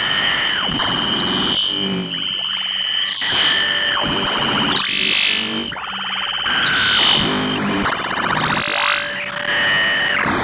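Improvised electronic noise music: a steady high tone under a dense, warbling synthesizer-like texture, with a bright falling sweep about every two seconds.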